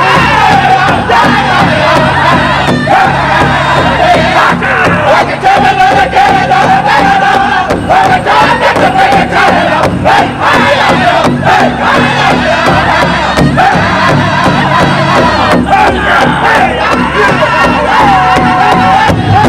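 A powwow drum group of men singing a traditional song together in high voices, beating in unison on one large shared hand drum.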